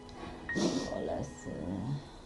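A woman whimpering and sobbing: a breathy catch about half a second in, then broken, wavering cries.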